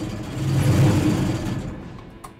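Engine of an underground mining machine running, rising in level as it is revved from about half a second in and then dying down toward the end.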